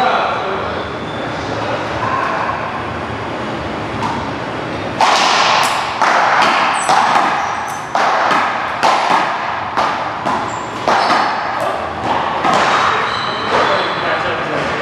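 One-wall paddleball rally: the ball is struck by solid paddles and smacks off the wall in quick succession, about two sharp hits a second with a ringing echo off the hall. The hits begin about five seconds in and stop just before the end.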